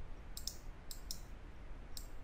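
Computer mouse button clicking: a handful of short, sharp clicks, two close together about half a second in, then two more around a second in, over a faint low hum.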